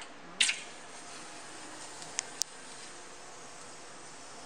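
A hot glass marble, wrapped in wire, plunged into a bowl of cold water: a brief loud hiss about half a second in as the glass is quenched so that it cracks inside. Two sharp ticks follow a little after two seconds, over a steady faint hiss.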